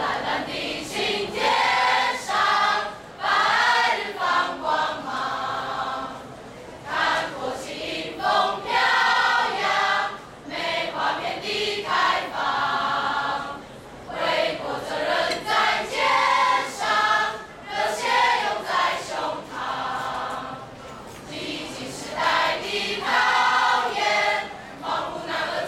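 A class of students singing a patriotic song together in chorus, in phrases of a second or two with short breaks between them.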